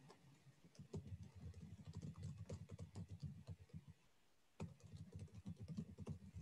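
Faint rapid typing on a computer keyboard, heard over a video-call microphone. The keystrokes start about a second in, stop for about a second past the middle, then carry on.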